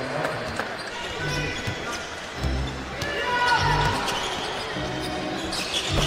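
A basketball dribbled on a hardwood court, low bounces about once a second, over the steady noise of an arena crowd with faint voices.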